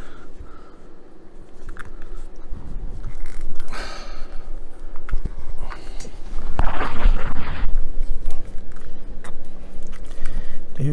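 Hands forcing a stiff rubber tyre onto a plastic model-truck wheel rim: rubbing and handling noise from the rubber, plastic and towel. Two longer hissing rushes come about four and seven seconds in.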